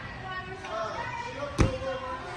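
A gymnast's dismount landing on a thick gym mat: one heavy thud about one and a half seconds in, over voices in the background.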